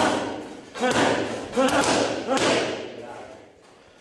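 Boxing punches landing with thuds in a reverberant gym, about three blows roughly a second apart, with voices calling out over them; the sound dies away in the last second.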